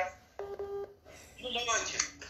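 A single short electronic beep from a smartphone during a video call, one steady tone lasting about half a second that cuts off sharply; a voice follows near the end.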